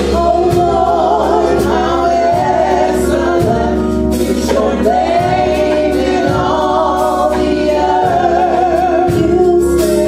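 A trio of women singing a gospel song into microphones, drawing out long notes with vibrato, over amplified instrumental accompaniment with a steady low bass and a regular beat.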